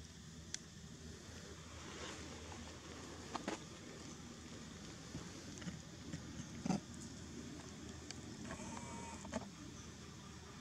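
Quiet outdoor background noise with a few faint, sharp clicks and taps, the loudest a little before seven seconds in, and a brief faint pitched call about a second before the end.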